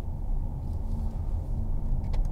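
Steady low road and drivetrain noise inside the cabin of a moving 2015 Mercedes-Benz C300 BlueTEC Hybrid diesel-electric estate.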